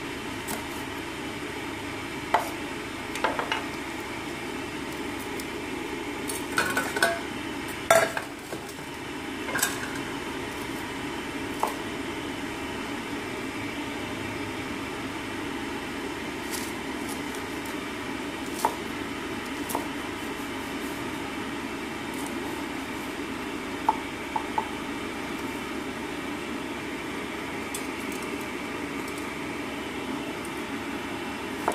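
Kitchen knife slicing long red chillies on a wooden chopping board: scattered, irregular knocks of the blade on the board, most of them bunched about seven to ten seconds in, over a steady background hiss.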